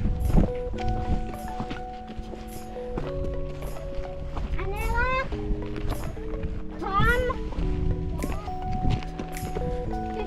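Background music of held chords that change every second or two, with a light ticking beat and a rising swoop about every two and a half seconds, over a low rumble.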